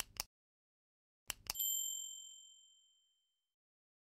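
Subscribe-button animation sound effect: a double mouse click at the start and another about a second later, then a bell-like ding that rings out and fades over about two seconds.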